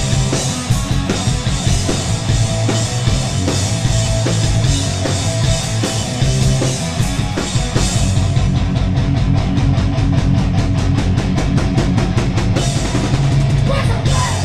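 A thrash metal band playing live at full volume: distorted electric guitars, bass and a fast drum beat, with no vocals. About two-thirds of the way in, a fast, even run of drum hits stands out for a few seconds.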